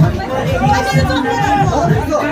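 Dance music with a steady beat, mixed with people's voices chattering and calling out over it.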